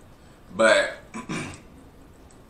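A man's short wordless vocal sounds: one about half a second in, and a second, shorter one about a second later with a small click just before it.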